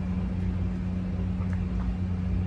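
A steady dull roar with a low hum from a baby monitor turned up loud, with a faint swallow or two from drinking out of a plastic bottle.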